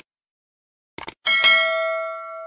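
Subscribe-button sound effect: quick mouse clicks at the start and again about a second in, then a bright bell ding that rings on with several steady tones and slowly fades.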